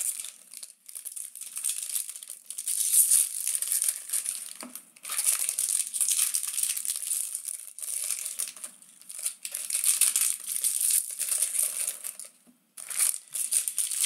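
Foil wrappers of Bowman Draft baseball card packs crinkling and being torn open, in several spells of sharp crackling broken by short pauses.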